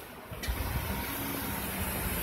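A motor vehicle engine running steadily amid street noise, starting about half a second in.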